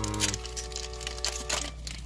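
Foil wrapper of a Pokémon card booster pack crinkling and tearing as it is opened, with a run of small crackles, over background music with held notes.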